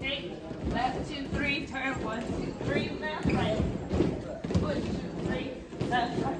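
Indistinct chatter of many people in a large room, with repeated footsteps thudding on a hollow portable stage.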